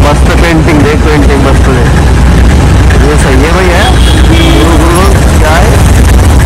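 Steady low rumble of a car on the move, heard from inside the cabin, with a voice over it.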